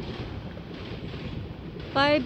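Wind noise on the microphone: a steady, even rush with no clear pitch, heaviest in the low end.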